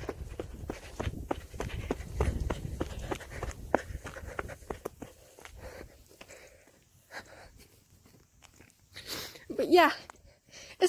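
Footsteps of a person on the move, irregular clicks with a low rumble on the phone's microphone, dying away after about five seconds. A short burst of voice comes near the end.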